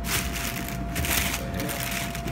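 Tissue paper rustling and crinkling in irregular bursts as a sneaker is handled and lifted in its shoebox.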